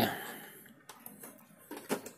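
Light plastic clicks as the maintenance tank (waste-ink box) of an Epson L120 printer is worked free of the printer's housing: one click about a second in and a few more near the end.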